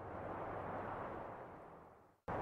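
A faint, soft rushing noise with no clear pitch that slowly fades out, then cuts to silence at the very end.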